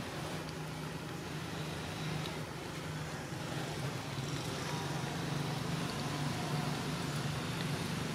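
A motor vehicle engine running steadily, heard as a continuous low hum under faint background noise.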